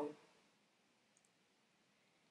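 Near silence: room tone, with one very faint click just over a second in.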